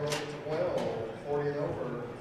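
Foosball ball clacking against the plastic players and rods: two sharp knocks about a second apart, with a man talking over them.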